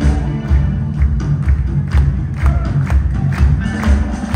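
A live rock band playing, with electric guitars over bass and a steady drum beat, heard from among the audience.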